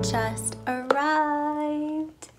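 Soft background music ends under a second in, and a woman's voice then holds one steady note for about a second, an excited sung exclamation.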